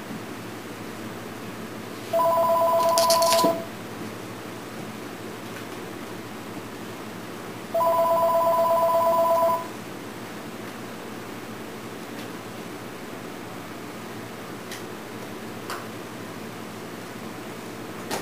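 A telephone ringing twice, each ring a steady two-tone electronic ring of about one and a half to two seconds, with about four seconds between rings, over a steady background hiss.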